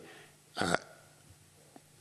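A man's short hesitation sound, "uh", in a pause in speech, otherwise quiet room tone, with a faint click near the end.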